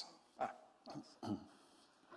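A man's short "ah" about half a second in, followed by two more brief vocal sounds, then only faint room tone.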